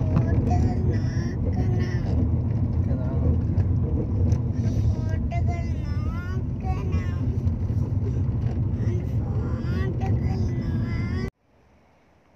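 A loud, steady low rumble, with high wavering pitched sounds over it in the middle. It cuts off abruptly shortly before the end.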